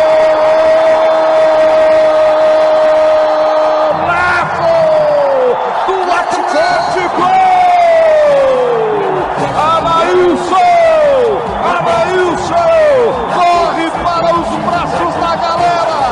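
Brazilian radio football commentator's goal cry: one long held 'gol' on a steady pitch for about four seconds, then a run of excited shouts, each falling in pitch, over crowd noise.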